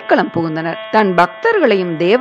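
A person's voice narrating in Tamil, its pitch gliding up and down, over a faint steady background tone.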